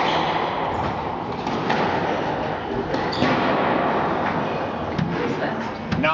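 Squash ball being struck by rackets and hitting the court walls during a rally: sharp knocks at irregular intervals, about a second apart, ringing in the hall over a steady murmur of spectator chatter.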